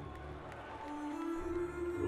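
Concert music through the PA of a large hall, heard from far back: a steady low bass drone, joined about halfway through by a held note that steps up slightly in pitch.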